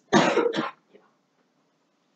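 A person close by coughs once, a loud burst in two quick parts lasting under a second near the start.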